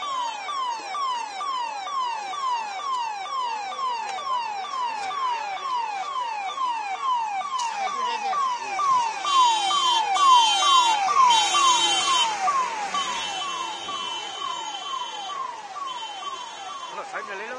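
Fire engine's electronic siren in a fast yelp: a falling wail repeating about twice a second. For about three seconds in the middle a louder high hiss joins it.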